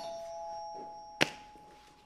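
Two-note ding-dong doorbell chime, its two tones ringing on and slowly fading. A single sharp click cuts in a little over a second in.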